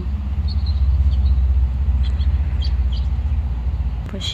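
Wind buffeting the microphone outdoors: a loud, choppy low rumble that swells about a second in and eases off toward the end. A few short, high bird chirps sound over it.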